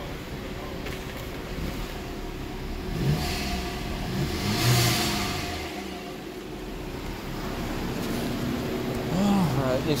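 BMW F33 428i engine starting, with a brief rev about five seconds in, then running at idle. This is the start that the starter lock reset after the new front electronic module was programmed has allowed.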